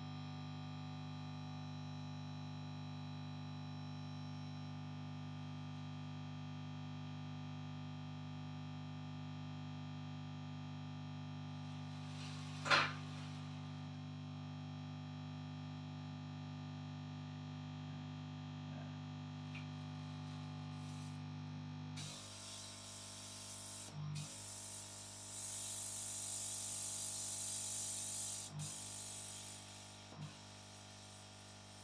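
A steady electrical hum with one sharp click about halfway through. Near the end the hum stops and compressed air hisses from a nozzle, blowing to dry the glue on electrodes fixed to the scalp.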